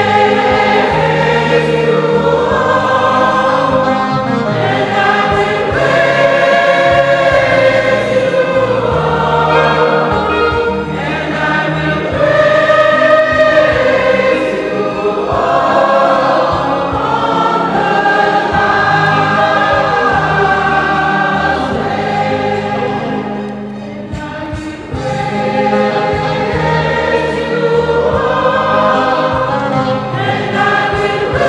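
Church choir singing a hymn in parts over a low instrumental bass line that moves in steady held notes, softening briefly about three-quarters of the way through.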